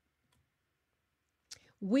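A pause with a faint click, then a woman starts speaking near the end.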